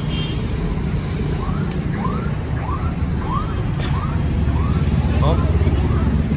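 A Honda Super Dream's single-cylinder four-stroke engine idling with a steady low hum. Over it, a high chirp repeats about every half second, seven times or so.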